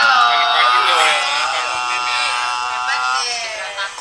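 A person's voice singing long held notes, with the pitch bending between them; it stops about three seconds in.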